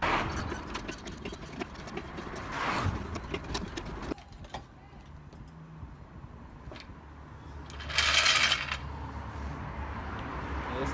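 Clicks, scrapes and rustling of hands and tools working under a car with a trolley jack and jack stands, over a low steady hum, with a short loud burst of noise about eight seconds in.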